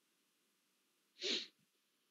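A person sneezing once, a single short burst about a second and a quarter in, against otherwise near-silent room tone.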